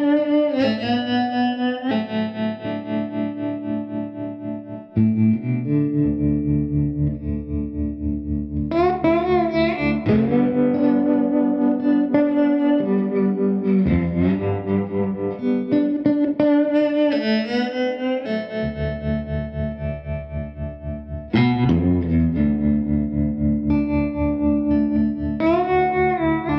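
Electric slide guitar in open D tuning playing a slow blues: sliding, wavering melody notes over a steady thumbed bass pulse, fresh phrases struck every few seconds.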